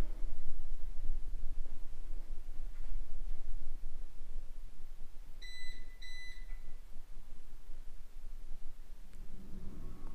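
Two quick electronic beeps in a row, about halfway through, high-pitched and clean: a household appliance reacting to mains power being cut to the house. A faint low rumble runs underneath.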